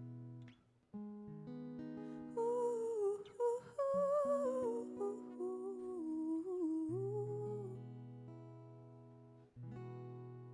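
Acoustic guitar playing slow, ringing chords, with a woman's wordless sung line with vibrato over it from about two seconds in until nearly eight seconds in.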